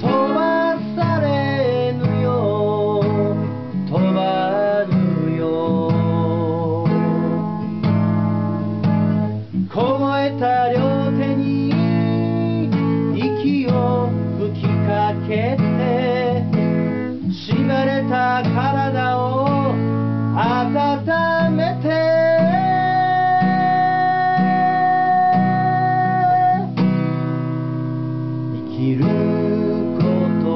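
A solo singer with his own strummed acoustic guitar, singing a Japanese folk ballad a half step below the original key. About three quarters of the way through, one long note is held steady over the chords.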